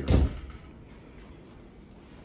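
A brief low thump right at the start, then quiet room tone.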